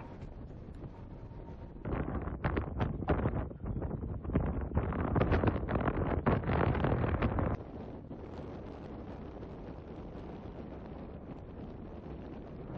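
Wind on the microphone at sea: a steady wind rush, with a much louder, crackling, buffeting stretch from about two seconds in until about seven and a half seconds.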